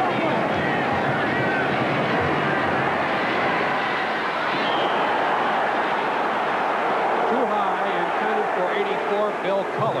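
Stadium crowd noise during a football play: a steady din of many voices, with a few louder voices standing out near the end.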